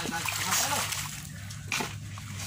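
Water splashing at a muddy riverbank, with a short, sharper splash near the end.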